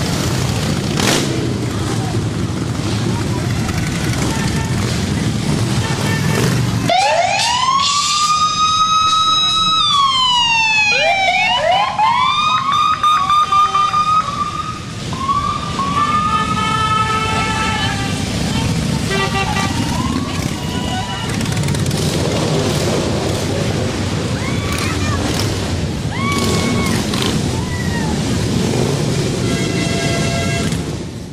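Cruiser motorcycles, Harley-Davidsons among them, rumbling past in a street parade. About seven seconds in, a siren starts wailing, rising and falling several times over roughly ten seconds, while the engine rumble carries on underneath.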